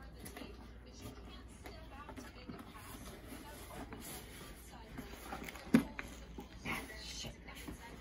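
Hands picking at the tape and handling a cardboard shipping box: faint scratching and rustling, with one sharp tap about six seconds in.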